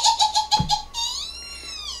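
A woman's high-pitched giggling: a quick run of short laughs, about seven a second, fading away, then one long held laughing note that rises and falls in pitch.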